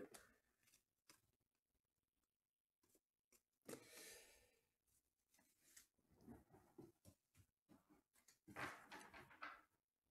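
Near silence with faint paper rustling and light taps: trading cards being handled and set down on a padded mat, a short rustle a little under four seconds in and a scatter of small taps and rustles in the second half.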